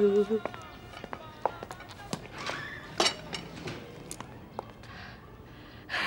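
A held sung or hummed note ends just after the start. Then come scattered light clicks and taps of small objects handled at a table, around a metal hip flask and a tea set.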